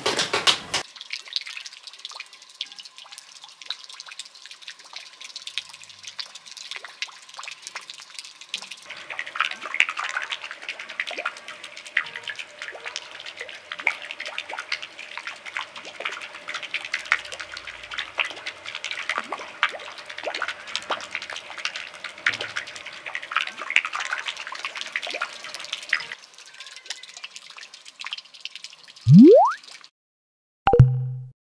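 Small fountain jet splashing down into a pool: a steady patter of falling water, a little louder from about a third of the way in. Just before the end, a short, loud rising sweep sound effect.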